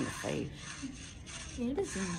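Gift wrapping paper rustling and tearing as a present is opened, heard thinly through a tablet's speaker on a video call, with voices over it at the start and near the end.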